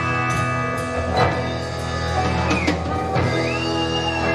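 Live rock band playing an instrumental passage: electric guitars, bass, drum kit and keyboards together.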